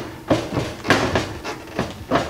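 Stainless steel LG oven door being lifted off its latched hinges: a few metal clunks and rattles as the hinge arms shift in their slots.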